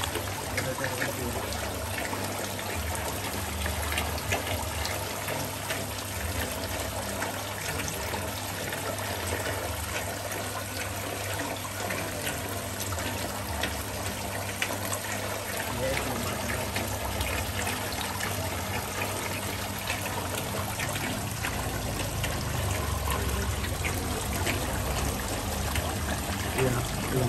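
Water pouring from an inlet pipe into a shallow crayfish pond, a steady splashing trickle with small irregular splashes.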